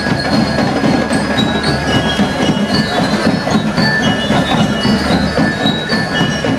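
School marching band playing: snare and bass drums keep a dense march beat while bell lyres ring a melody of short, high metallic notes over it.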